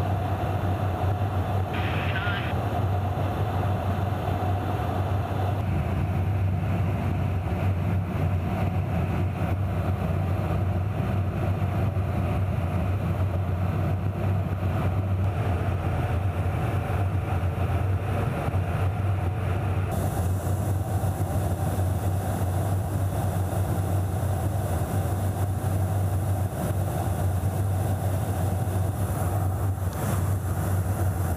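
Steady drone inside a KC-135 Stratotanker's boom operator compartment in flight: engine and airflow noise with a low hum and a held mid tone. There is a short higher sound about two seconds in, and the hiss turns brighter about two-thirds of the way through.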